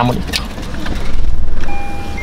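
Car running inside the cabin with a steady low rumble, growing louder and noisier about a second in, and a steady electronic chime tone from the car near the end.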